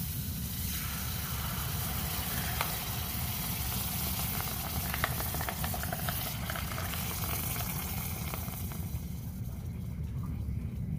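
Hot freshly cast aluminum ingot quenched in a mug of water, sizzling steadily as the water boils against the metal, with scattered sharp crackles.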